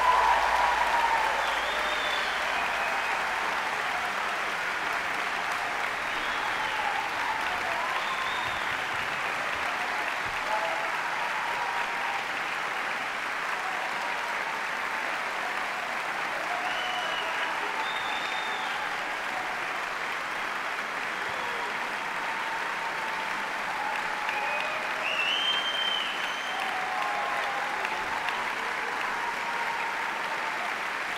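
Large audience applauding steadily in a concert hall, with scattered cheers and shouts rising above the clapping, most noticeably about twenty-five seconds in.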